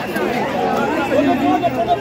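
A dense crowd of many people talking over one another: steady, loud chatter with no single voice standing out.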